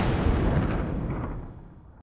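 Whoosh-and-boom sound effect for an animated logo: a deep, rushing rumble that is loudest at the start and fades away steadily.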